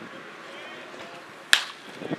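Baseball bat striking a pitched ball: one sharp crack about one and a half seconds in, sending the ball up in the air. Faint voices in the background.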